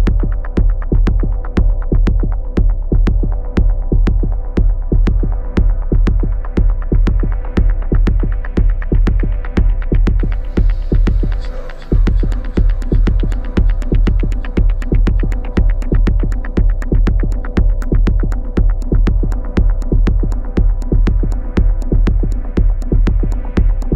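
Instrumental techno: a fast, even beat of sharp clicks and deep bass thuds over a steady droning hum. About halfway through, a wash of high noise swells, and the bass cuts out for an instant before the beat comes back.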